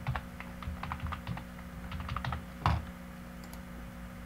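Computer keyboard being typed on in a quick run of keystrokes, with one louder stroke near the end, about two and a half seconds in, after which the typing stops. A steady low hum runs underneath.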